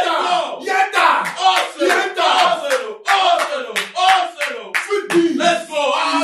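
Several men shouting and yelling over one another in loud, excited celebration of a goal, with a few sharp smacks among the voices.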